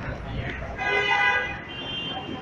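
Lift arrival signal: an electronic tone held for about a second, then a shorter, higher tone, after a brief low rumble as the hydraulic car comes to a stop.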